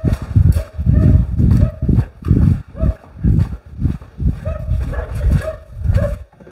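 Footsteps walking across a concrete shop floor, about two heavy, low thumps a second, with bumps from a camera being carried along.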